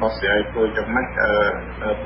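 Speech only: a news reader speaking Khmer, with the thin, narrow sound of a radio broadcast, over a steady low hum.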